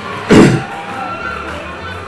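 Swing jazz from a live band with saxophone, double bass, accordion and drums, played for solo jazz dancers. About a third of a second in there is one brief, loud sound that stands out above the music.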